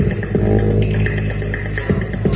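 Live electronic IDM music played from Ableton Live with a Push controller: a fast, even ticking beat in the highs over a held bass note and short synth notes.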